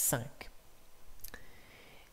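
The tail of a man's spoken word, then two faint sharp clicks, about half a second in and again past the middle. The second click is followed by a faint thin tone.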